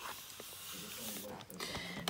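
Quiet rustling as the boxed doll is handled and tilted, with a soft, wordless vocal sound, a hum or murmur, from about a second in.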